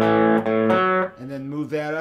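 Electric guitar playing a bluesy blues-rock riff: the open A string rings under a fretted note on the D string, struck once at the start and left to ring for about a second. After that a man's voice speaks briefly over the fading strings.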